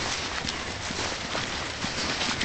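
Footsteps moving quickly along a dirt path strewn with leaves, with irregular rustles and knocks.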